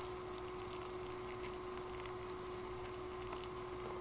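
Boiling water poured from an electric kettle into an instant-ramen packet, a faint steady pour.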